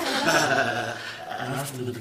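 A man's voice in drawn-out, wordless vocalizing, with speech starting at the very end.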